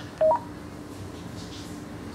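Motorola XPR 4550 MotoTrbo radio giving a short two-note beep, low then higher, as the incoming digital call ends. A faint steady hum follows.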